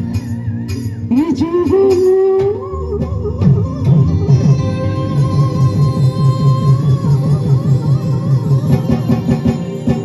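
Live band playing a Bihu song: a melodic lead line with pitch bends, then a steady drum beat from about three and a half seconds in.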